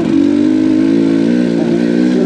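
Dirt bike engine running at a steady, even pitch while being ridden.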